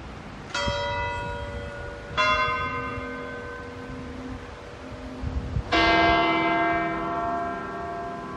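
Church bell of St. Peter's Basilica tolling: three strikes, about half a second, two seconds and nearly six seconds in, each left ringing long.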